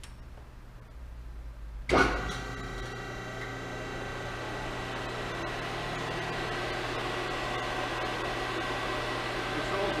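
Hydraulic pump motor of a Hoston 176-ton CNC press brake (14.75 hp, 220 V three-phase) switching on about two seconds in with a sudden loud start, then running with a steady hum.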